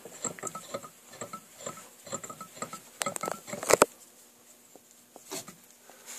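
Small metal clicks, taps and scrapes as a steel arbor shaft is worked into a motorcycle Evo engine flywheel on a workbench, with a cluster of sharper knocks a little after three seconds in.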